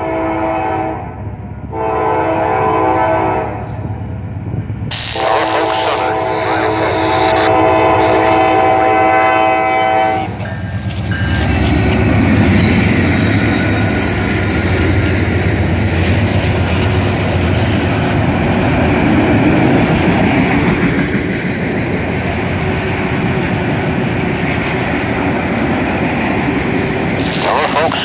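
Norfolk Southern freight locomotive's air horn blowing for a grade crossing: the end of one blast, a short blast, then a long blast of about five seconds. The locomotives then pass close by with a loud rumble, followed by the steady rolling noise of a long string of autorack freight cars.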